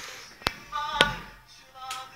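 Two sharp taps about half a second apart: playing cards set down on a wooden table while a house of cards is built, with faint voices under them.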